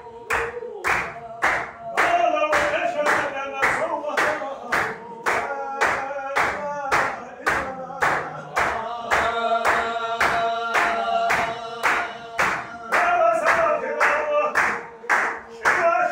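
A group of men chanting a Sufi zikr in unison in long held notes, over steady rhythmic clapping of about three claps a second.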